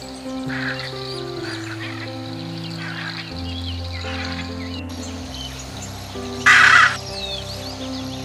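Slow background music of long held notes under faint small-bird chirps and a few harsh parrot calls. Near the end comes one short, loud, harsh squawk of the hyacinth macaw.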